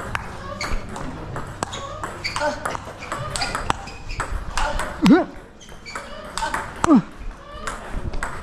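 Table tennis rally: a ping pong ball clicking off bats and the table in quick, irregular succession. Two loud vocal grunts from the players on strokes come about five and seven seconds in.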